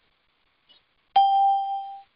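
A single bell-like ding about a second in: one sudden strike that rings on with a clear main pitch and fainter higher overtones, dying away in under a second. A faint tick comes just before it.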